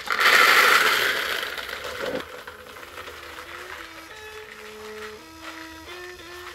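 Dried corn kernels poured from a tray into a plastic bucket: a rushing rattle for about the first two seconds that fades out, over background music of held melody notes.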